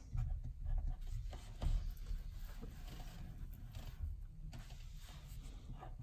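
Felt-tip marker writing on paper: faint scratchy strokes as a few words are written by hand.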